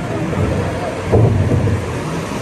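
Rushing water and a deep rumble in the dark ride's boat channel, swelling about a second in.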